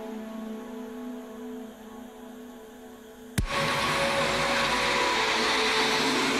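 Electronic music playing back from an old FL Studio project: a sustained synth pad chord holds and slowly fades, then about three and a half seconds in a sudden click brings in a loud, noisy hiss-like synth wash.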